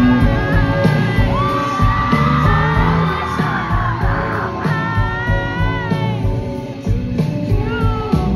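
Live band playing on stage: drum kit and electric guitars under long held, slightly bending melody notes, heard loud through a phone microphone in the audience.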